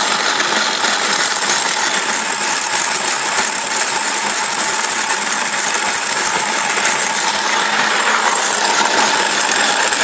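A motorised Corona hand grain mill, driven by an old cordless drill motor running off a 12 V supply in low gear, running steadily with a loud, continuous metallic rattle and clatter as it grinds.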